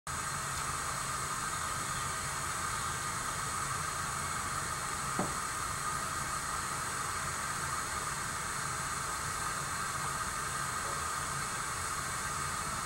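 Steady background hiss with a low hum underneath, and one faint click about five seconds in.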